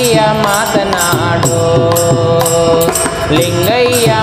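Live Kannada devotional song: a man's voice drawing out an ornamented line over steady held accompanying notes, with regular strokes on hand drums.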